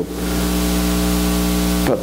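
Loud, steady electrical mains hum with a layer of static hiss on the audio feed. It cuts off suddenly near the end as speech resumes.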